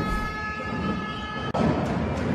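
League logo sting: a quick whoosh into a held electronic chord of several steady tones, lasting about a second and a half. It cuts off abruptly into louder, busier sound as the match audio resumes.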